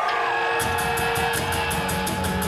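Live heavy metal band starting a song: a held guitar tone, then about half a second in the full band comes in with distorted electric guitar, bass and drums, cymbals keeping a quick steady beat.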